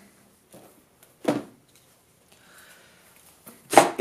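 Power cord being unwrapped by hand: a few short, faint rustles, one sharper rustle about a second in, and another short noise just before the end.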